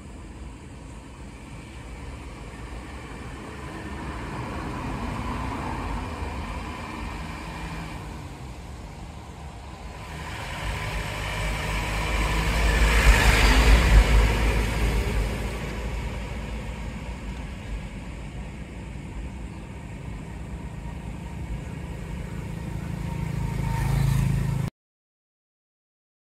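A road vehicle passing close by, its engine and tyre noise building to a loud peak about halfway through and then fading away, after a quieter, smaller swell earlier on.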